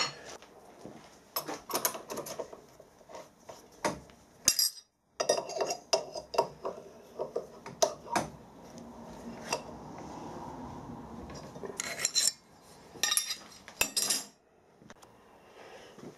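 Steel tooling and hand tools clinking and clanking as a cutter holder and spanner are handled at a milling machine's spindle. Many separate sharp clinks, with a steadier stretch of metal rubbing in the middle.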